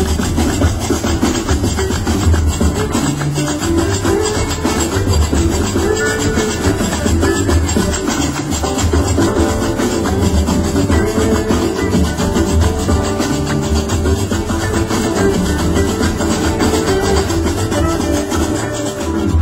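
Live Gnawa–jazz fusion music with no singing: qraqeb metal castanets clatter in a steady, fast rhythm over a deep bass line, joined by acoustic guitar.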